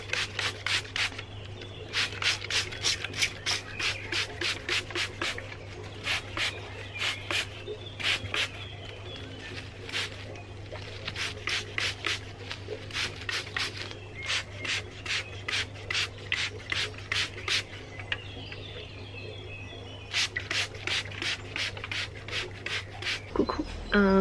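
Hand trigger spray bottle squirting a soapy water, vinegar and dish-soap solution onto potted plants' leaves against aphids: quick hissing squirts, about three a second, in runs with short pauses between them.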